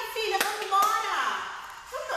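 A woman's voice in a light, animated exchange, with two sharp taps about 0.4 seconds apart in the first second.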